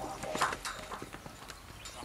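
Tail of a channel outro jingle: scattered short clicks and hits, fading as the piece dies away.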